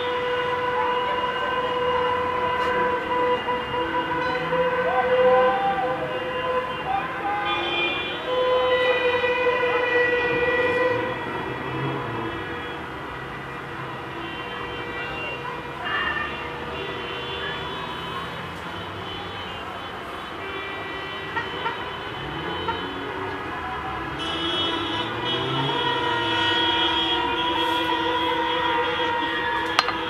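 Car horns honking in long held blasts, several overlapping, the kind of horn-blowing heard from a football victory motorcade. The horns are loudest in the first ten seconds and again near the end, with passing traffic underneath.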